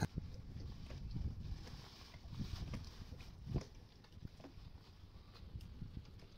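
Faint low background noise with a few soft knocks, the clearest about three and a half seconds in.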